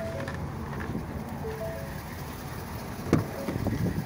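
Steady hum of a Ford 6.7 L Power Stroke diesel idling with the cab's air conditioning blowing. A few faint short tones sound in the first two seconds, and a sharp click with a moment of handling noise comes about three seconds in.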